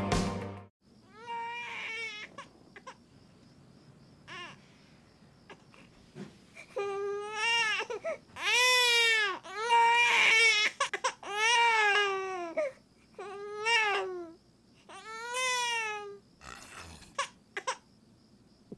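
Music cuts off just after the start, then a baby cries in a string of about eight rising-and-falling wails, loudest around the middle, while its stuffy nose is being cleared with a nasal aspirator.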